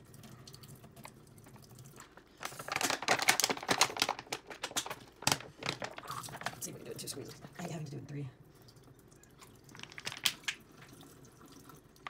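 Water streaming from a Sawyer Squeeze filter into a stainless steel sink as its plastic bottle is squeezed hard by hand. The plastic crackles and crinkles, loudest from about two and a half seconds in for about three seconds. It is a timed flow test of the filter after a hot-water soak and firm back-flush.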